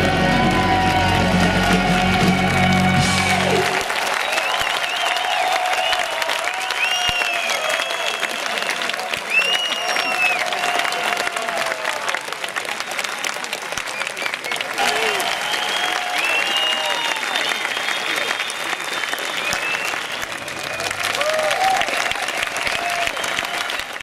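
A rock band's final held chord, with deep bass, rings and stops about three and a half seconds in. Then a large concert crowd applauds and cheers, with many rising-and-falling whistles.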